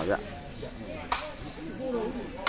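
A single sharp smack of a sepak takraw ball being kicked, about a second in, over faint crowd voices.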